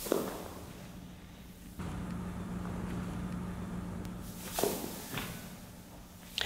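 Soft thuds of weighted plyo balls thrown into a practice net and dropping onto the turf: one right at the start, another about four and a half seconds in, and a lighter one just after. A steady low hum runs through the middle.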